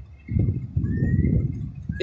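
Wind buffeting the microphone in uneven gusts, a low rumbling that swells and drops.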